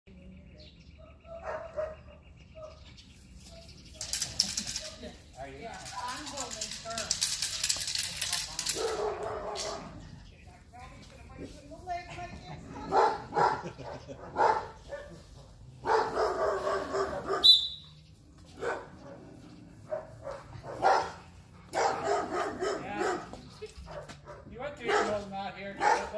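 A large dog barking in short bouts, mostly in the second half, with a stretch of rustling noise earlier on.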